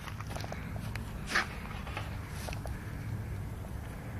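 Dry grass and straw rustling underfoot and under a hand, with a few light crackles and one short, sharper rustle about a second and a half in, over a steady low rumble.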